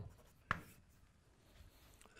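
Chalk on a blackboard: a sharp tap of chalk against the board about half a second in, then faint writing strokes.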